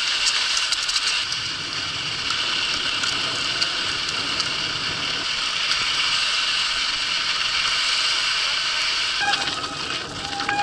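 Steady rush of wind on the camera and tyres rolling over soft, groomed snow as a mountain bike runs downhill, with the frame rattling. About a second before the end the sound turns rougher, with clattering and a brief squeal, as the bike rolls onto rocky ground.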